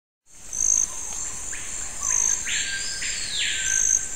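Insect chorus: a steady high-pitched drone with a short chirp repeating about every one and a half seconds, rising in right at the start, and a rushing hiss for about a second in the second half.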